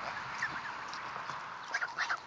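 A flock of domestic geese grazing, with a few faint, soft calls from the birds over a steady background hiss.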